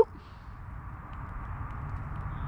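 Steady outdoor background noise with a low rumble and no distinct sound event.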